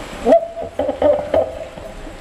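A person's voice making a few short pitched vocal sounds in quick succession, starting about a third of a second in as the background hiss cuts off suddenly.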